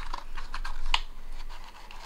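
Hands handling an opened cardboard trading-card box and pulling cards out of its insert: a run of light clicks and scratchy rustles, with the sharpest click about a second in.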